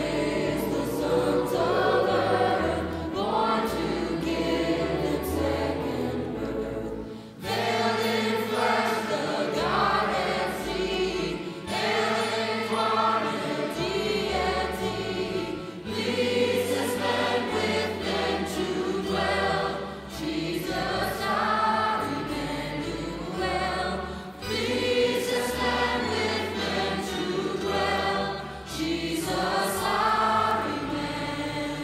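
Choir singing a slow Christmas hymn over a low sustained accompaniment, in phrases of a few seconds each with short breaths between.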